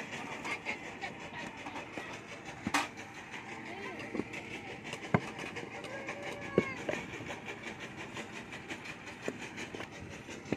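Background voices chattering, with a few sharp knocks and soft thuds scattered through as wet clay and a wooden brick mould are handled.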